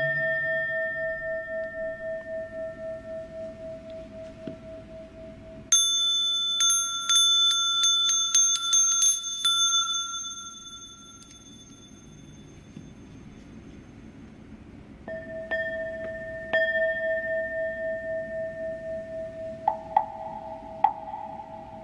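Buddhist ritual bells: a bowl bell rings and slowly fades with a wavering beat; about six seconds in, a small high-pitched hand bell rings with rapid repeated strokes for several seconds. After a short lull the bowl bell is struck again and rings, with a couple more strikes and a slightly higher second bell near the end.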